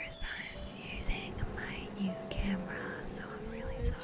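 A woman's whispered voice over soft background music with a few held notes.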